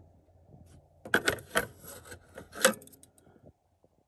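Plastic clicks and light rattles from the cassette compartment door of a Panasonic RX-5050 boombox being opened and handled. Several sharp clicks fall between about one and three seconds in.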